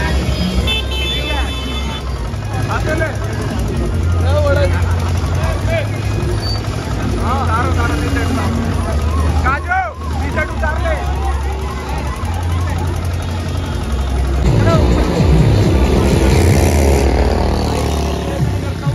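Loud music from a kanwar procession truck's DJ sound system, with a heavy bass line stepping between notes and voices over it.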